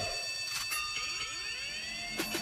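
Electronic transition effect in a pop dance track: a held high synth tone sounds through, while several pitch sweeps arch up and fall back beneath it, leading into the next section of the song.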